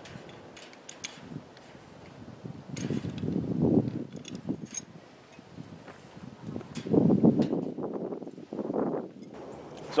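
Galvanized hardware cloth and wire panels being handled and shaped by hand: two spells of rustling and scraping, about three and about seven seconds in, with scattered light clicks of wire.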